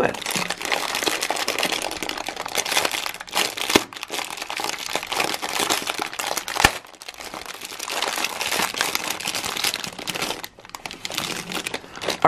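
Clear plastic bag of dried soap nuts being handled and opened by hand, crinkling continuously, with one sharp snap a little past halfway.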